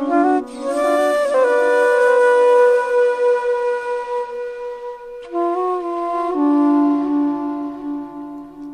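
Slow ambient instrumental music led by a flute playing long-held notes, with a lower sustained tone joining about six seconds in.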